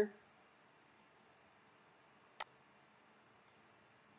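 A single sharp computer mouse click about two and a half seconds in, with two much fainter ticks before and after it, over quiet room tone.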